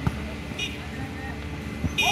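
A volleyball struck by hand twice, a sharp smack right at the start and another just before the end, as the serve and the next touch at the net. Under it runs a steady murmur of spectators' voices and a low hum, with a brief shrill chirp about halfway through.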